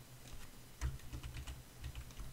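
Computer keyboard keys clicking in a quick, uneven run of about ten presses.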